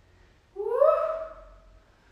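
A woman's wordless vocal sound: a single call, starting about half a second in, that rises in pitch and then holds for about a second before fading.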